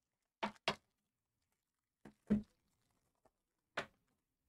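Foil wrapper of a 2022 Panini Luminance football card pack being torn open by hand: short crinkling rips, two close together, two more about two seconds in, and one near the end.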